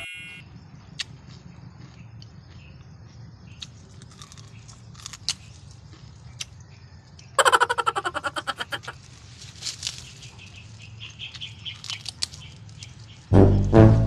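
Quiet background with a low steady hum and scattered short chirps, broken about seven seconds in by a loud, rapid trill lasting about a second; loud music with a steady beat starts near the end.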